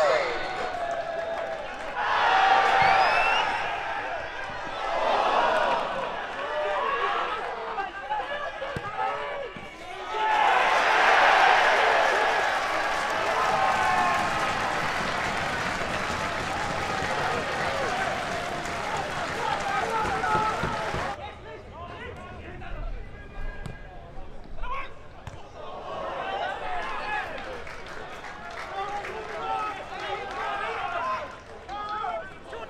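Shouting voices of a small football crowd and players at an outdoor ground. About ten seconds in, a louder, denser stretch of crowd noise starts and then stops suddenly about twenty seconds in, followed by quieter calls and voices.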